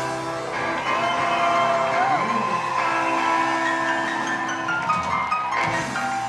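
Live rock and roll band playing on stage, with notes and chords held and ringing. One note bends up and down about two seconds in.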